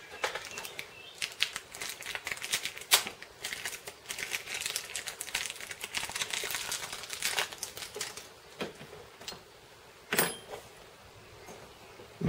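Thin plastic wrapper crinkling and crackling in the hands as a new piston wrist pin is unwrapped, with many small irregular clicks. It dies down after about eight seconds, with one sharper rustle a couple of seconds later.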